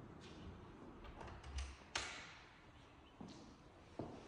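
A few faint, short taps and clicks over a quiet room hiss, the clearest about two seconds in.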